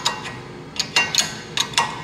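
A wrench clinking on a bolt head and the metal brake adapter bracket as it is worked: about five short, sharp metallic clicks in the second half.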